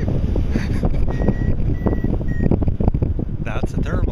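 Wind buffeting the microphone of a harness-mounted camera in flight on a tandem paraglider, with a variometer sounding three short beeps at one steady pitch between about one and two and a half seconds in, its signal for lift.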